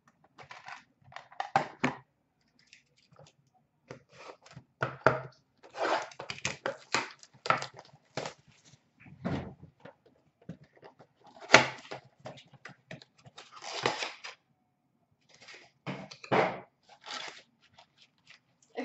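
Cardboard hockey-card blaster box being handled and torn open by hand: irregular short tearing, crinkling and knocking sounds, with the loudest sharp crack a little past the middle.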